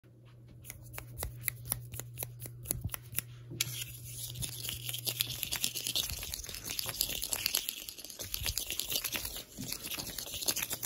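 Quick, irregular sharp taps for the first three and a half seconds, then thin clear plastic squeezed and crinkled in the fingers close to the microphone, a dense crackling.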